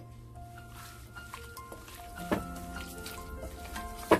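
Soft background music of calm, sustained notes, with a faint knock a little past halfway.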